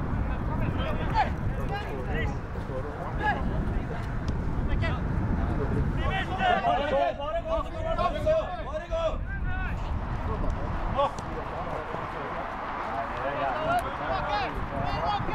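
Voices shouting and calling across a football pitch during play, with a cluster of several voices at once from about six to nine seconds in. A steady low rumble of wind on the microphone runs underneath.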